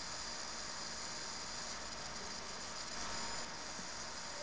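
Faint, steady background hiss of a recording microphone and room, with no other sound.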